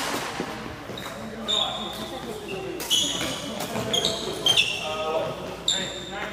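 Sneakers squeaking in short chirps on a wooden gym floor during a badminton rally, with several sharp hits of rackets on the shuttlecock.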